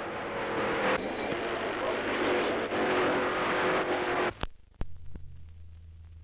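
Auto Union racing car's supercharged V16 engine running at speed along the track, a dense steady drone. It cuts off after about four seconds, leaving a few sharp clicks and a faint hum.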